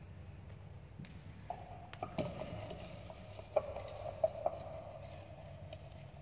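A hand rummaging for a folded paper slip inside a lidded mug, with several sharp clinks and knocks against the mug, the loudest about three and a half and four and a quarter seconds in.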